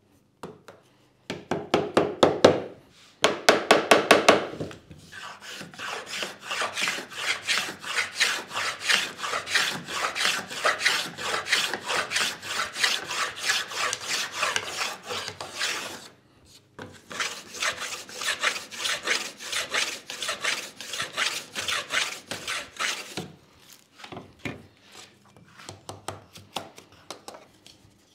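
A soft-faced mallet taps a spalted beech board into a jig in two quick runs of knocks. Then a small fenced hand plane cuts a rebate along the board in rapid repeated strokes, pausing once about halfway. A few lighter mallet taps come near the end.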